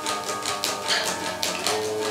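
Electric guitar picked in a quick, even run of single notes, about five a second, each pick attack sharp and clicky.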